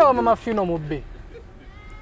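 A man's voice in a raised, wavering pitch for about the first second, falling away, then a quieter pause.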